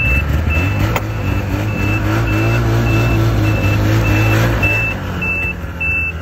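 Snowmobile engine running with the reverse engaged, its reverse warning buzzer giving short, evenly spaced high beeps, about one and a half a second. The engine picks up about a second in, holds, and drops back to idle near the end.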